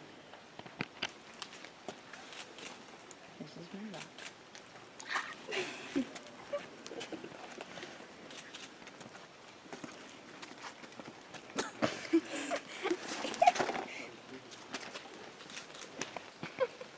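Footsteps on a rocky trail: irregular scuffs and knocks of shoes on stone and gravel, with indistinct voices about five seconds in and again from about twelve to fourteen seconds.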